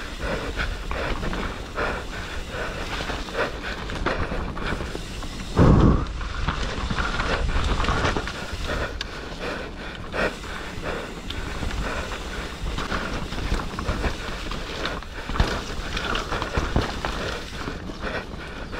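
Enduro mountain bike descending a dirt singletrack at speed: continuous tyre and rolling noise with many small rattles and knocks from the bike over bumps. A loud thump about six seconds in.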